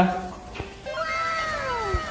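A kitten meowing: one long drawn-out meow, starting about half a second in, that rises slightly and then falls steadily in pitch.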